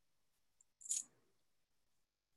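Near silence broken about a second in by a single short, sharp, high-pitched clink that dies away quickly.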